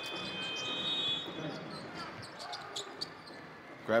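Basketball arena ambience: crowd noise and court sounds under live play. A thin high steady tone runs through the first second and a half, and there is one short knock about three seconds in.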